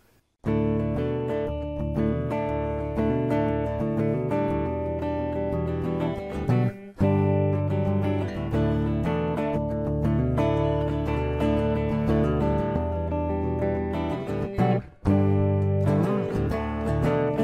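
Solo hollow-body guitar playing the song's instrumental intro, picked chords changing steadily, with two brief breaks about seven and fifteen seconds in.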